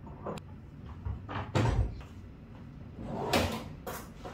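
Kitchen cabinet door clicking and knocking shut about a second and a half in, then a kitchen drawer sliding open near the end, with a click as it stops.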